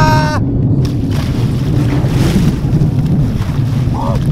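A man's drawn-out yell ends just after the start. Then comes loud churning and splashing of water as he plunges down into a cold lake, over a low rumble of wind on the microphone.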